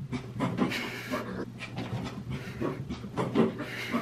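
A dog panting in quick, irregular breaths as it moves around in the hallway, over a low steady hum.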